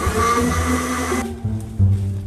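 Countertop blender running at high speed, then cutting off abruptly a little over a second in. Background music with plucked and bowed strings plays underneath.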